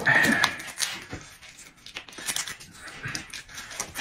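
A short high-pitched whine at the very start, then dried red chili peppers broken and crumbled between the fingers: scattered faint crackles and rustles.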